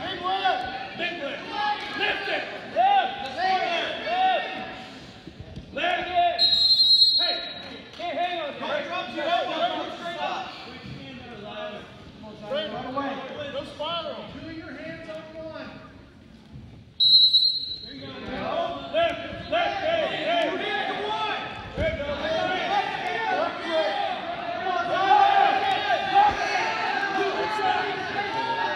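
Crowd chatter and shouting in a gymnasium during a wrestling match, with a referee's whistle blown twice: a blast of nearly a second about six seconds in and a shorter one about seventeen seconds in.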